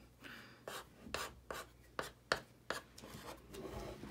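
Stick of white chalk writing on a painted wooden sign coated with clear chalkboard coating: about half a dozen short, faint scratching strokes.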